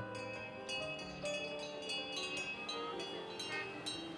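Metal wind chimes ringing, many light strikes at irregular moments, each leaving high ringing tones that die away.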